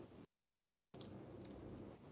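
Near silence: faint room hiss that cuts out completely for about half a second, then returns with a couple of small clicks.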